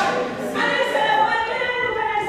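Church congregation singing together without instruments, holding a long note from about half a second in.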